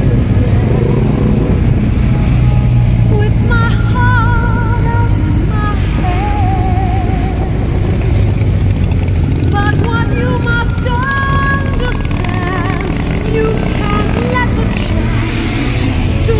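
Steady low rumble of motorcycle engines and wind from riding along behind a group of big motorcycles, mixed with music that has a singing voice with a wavering pitch.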